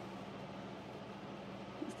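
Room tone: a steady low hiss with a faint constant hum, and a brief click near the end.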